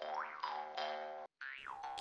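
Cartoon-style background music: held chord notes under a springy, boing-like sliding tone that rises and falls. It cuts off to silence about a second and a quarter in, then a falling sliding tone starts near the end.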